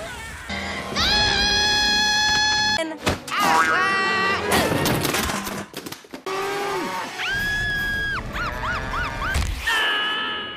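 Cartoon soundtrack of music and sound effects. It holds several long, high held tones, wavering and bouncing pitch swoops, and a few sharp knocks about three and five seconds in.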